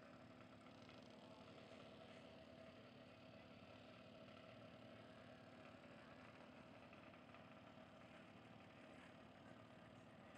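Faint, steady engine hum that does not change in pitch or level.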